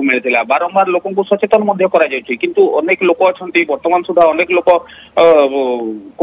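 A news correspondent speaking in Odia over a telephone line, the voice thin and narrow as through a phone. Talk runs steadily, with a long drawn-out vowel near the end.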